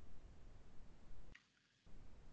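Faint microphone room noise on a video call, cutting out twice as the noise gate closes, with one faint computer-mouse click about a second and a half in.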